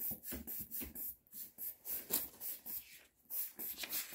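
Hand-operated air pump of a Boxio Wash sink being worked in quick strokes, about three or four a second, each a short rush of air, with two brief pauses. The pump is pressurising the fresh-water canister so that water will flow from the tap, and it is not yet doing so.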